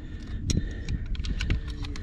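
Irregular light clicks and rattles of hands working a handheld digital fish scale and its hook while getting a carp weighed, over a low rumble of wind on the microphone.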